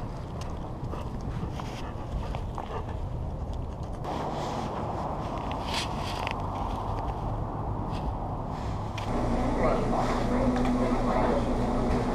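Outdoor background noise with a low rumble. From about nine seconds in, it gives way to café ambience: indistinct voices talking over a steady low hum.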